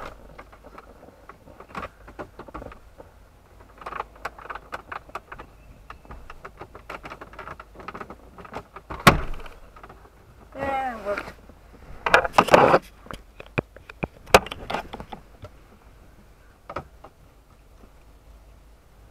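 Handling noise inside a vehicle cab: a string of clicks, taps and rustles, with a short wavering pitched sound about ten and a half seconds in and louder knocks soon after.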